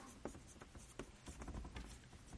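Chalk writing on a chalkboard: a faint, irregular run of short taps and scratches as the letters go on.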